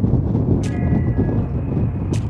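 Boeing C-17 Globemaster III's four turbofan engines giving a loud, steady low rumble as the jet touches down. A sharp click sounds about two-thirds of a second in.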